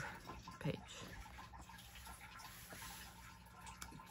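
Soft rustle of a paper coloring-book page being turned by hand.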